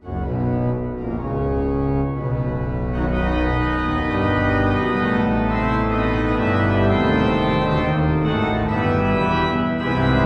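Sampled pipe organ on a Hauptwerk virtual organ playing full, loud sustained chords over deep bass, breaking in suddenly at the very start after a soft passage dies away.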